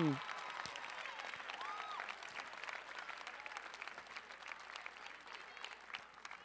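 Audience applause, dense clapping that gradually dies down.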